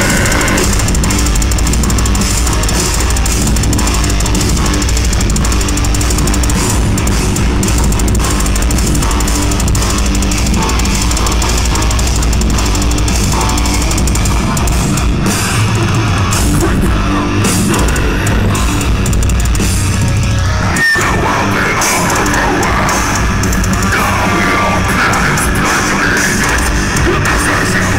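Live heavy metal band playing loud, with distorted guitars, bass and drum kit; the band stops for an instant about three-quarters of the way through, then comes straight back in.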